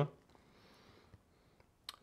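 Near silence with faint room hiss, broken by one short sharp click just before the end.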